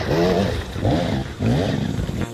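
Enduro motorcycle engine revving in three short bursts, the pitch climbing in each as the throttle is worked over rocks.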